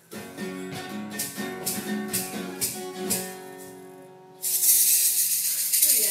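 Acoustic guitar strummed for several chords, the last one left ringing out; then, about four seconds in, a handheld shaker is shaken fast and steadily, louder than the guitar.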